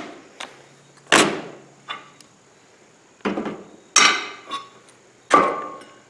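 About five sharp knocks and clatters, irregularly spaced and some with a short ring: a cordless drill and a plastic bit case being handled and set down on a metal mesh table.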